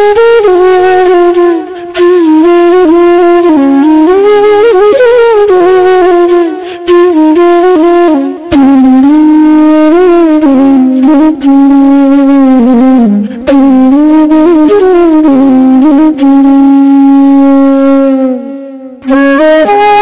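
Background music: a slow flute melody of long held notes that bend gently in pitch, with brief pauses between phrases.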